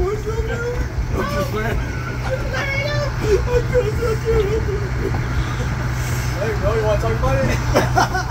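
A narrow-gauge train running: a steady low hum and rumble from the locomotive and the cars rolling on the track, with people talking in the background.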